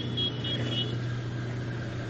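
Steady low hum over faint background noise, with a few short, high chirps in the first second.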